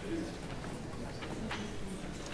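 Quiet auditorium room sound: a faint low steady hum with a few small rustles and clicks from the seated band and audience, with no music yet.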